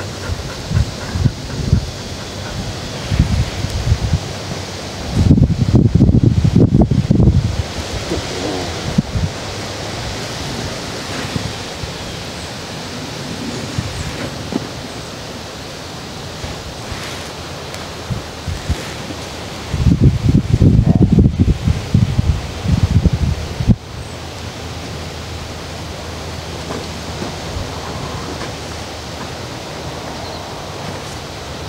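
Wind buffeting the microphone over a steady outdoor hiss, with two strong low rumbling gusts: one about five seconds in and another about twenty seconds in.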